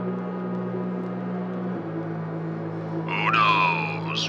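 Organ music holding low sustained chords, moving to a lower chord about two seconds in. Near the end a high, wavering sound with falling glides enters over the organ.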